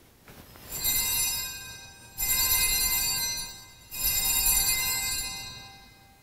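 Altar bells rung three times at the elevation of the consecrated host. Each ring is a cluster of high, bright bell tones that rings on, and the third fades away near the end.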